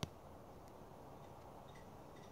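Near silence: faint room hiss, with one sharp click right at the start and a few much fainter ticks after it.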